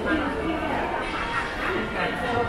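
Shopping-mall ambience: shoppers' voices over steady background music, with a short high call that rises and falls near the end.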